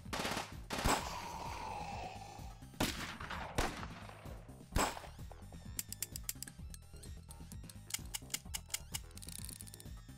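Gunshot sound effects: several single shots in the first five seconds, then rapid bursts of automatic fire from about six to nine seconds in.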